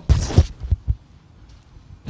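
A short rustling noise and three dull, low thumps within the first second, then a quieter stretch of room tone.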